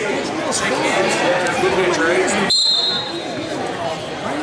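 Spectators chattering in a gymnasium. About two and a half seconds in comes a short high whistle blast, the referee's whistle starting the wrestling bout.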